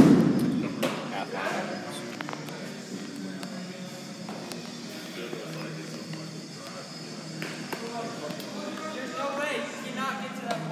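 A single loud thump right at the start that dies away quickly, followed by background voices and music.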